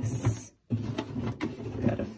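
Hands handling and shifting a cardboard gift box on a countertop: rubbing and scraping with a few light knocks. The sound cuts out completely for a moment about half a second in.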